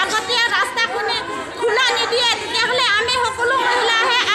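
Speech only: a woman talking into a cluster of microphones, with other voices behind her.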